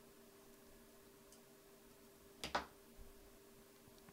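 Quiet workbench room tone with a faint steady hum, broken about two and a half seconds in by a short double click-knock of small hand tools and a circuit board being handled on a cutting mat.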